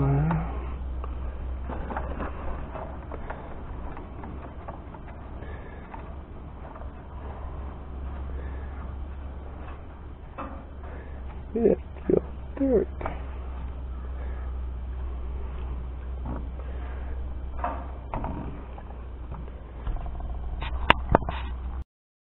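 Steel oil-bath air cleaner cup being pushed up and fitted onto the air cleaner body of an International Super W-6 tractor: scraping and handling noise, with a few short squeaks about twelve seconds in, over a steady low rumble.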